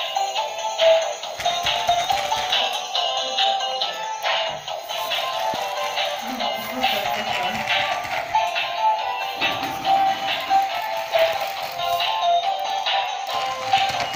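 ChiChi Love 'Happy' plush toy chihuahua playing its electronic dance tune, a thin, tinny melody with a steady beat: its response to the 'dance' voice command.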